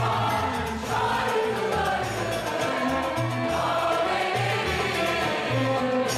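Mixed choir singing a Turkish classical (art) music piece, accompanied by a traditional ensemble of kanun, ud and double bass, over a steady low pulse.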